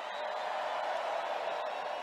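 Large indoor crowd cheering: a steady wash of many voices, slightly louder in the middle and easing toward the end.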